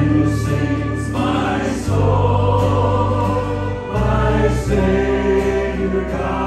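Church worship team singing together over instrumental accompaniment, with sustained bass notes changing about every two seconds.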